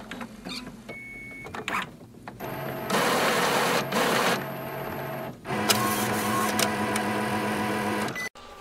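Epson inkjet printer's internal motors running through its power-on cycle after light clicks. There is a steady mechanical whir in two runs of about three seconds each, with a short break between them.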